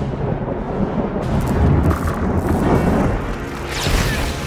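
Film soundtrack: an orchestral score over deep rumbling booms of a thunder effect, getting louder through the middle, with a sharp crack near the end.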